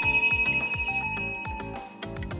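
A single bright bell-like ding that rings out and slowly fades over about two seconds, over background music with a steady beat.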